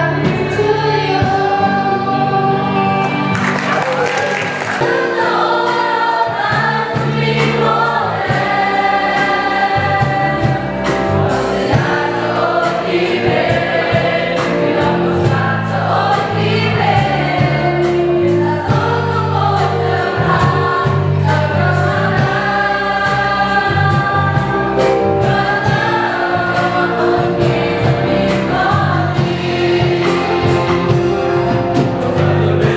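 A choir of young voices singing together, over steady low accompanying notes from instruments.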